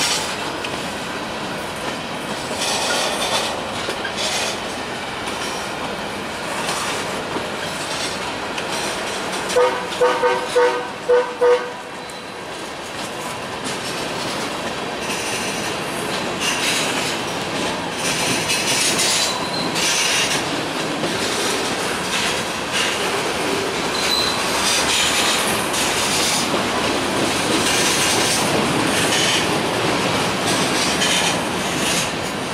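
Covered hopper cars of a freight train rolling slowly past, wheels clicking over rail joints with intermittent high-pitched wheel squeal. About ten seconds in, a horn sounds a quick run of short toots.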